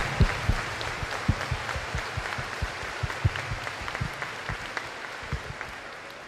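An audience of students applauding, many hands clapping at once, the applause slowly dying away toward the end.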